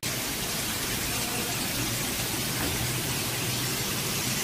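A steady, even hiss with no distinct events, starting abruptly at a cut in the recording.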